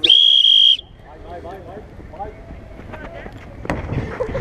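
A single loud blast on a referee's whistle, one steady high note lasting under a second at the start, followed by distant shouting voices.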